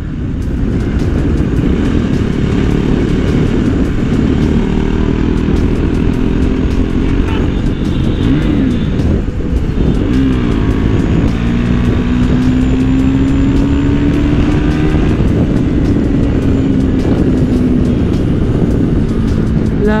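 KTM 390 single-cylinder motorcycle engine running at cruising speed, with wind rushing over the microphone. The engine note dips and rises briefly twice, then holds a long note that climbs slowly and eases back.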